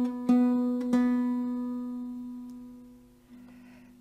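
Baritone ukulele strings plucked in turn, twice in the first second: the third string at the fourth fret and the open second string, both sounding the same B. The note rings and fades away over a couple of seconds: the B string is in tune.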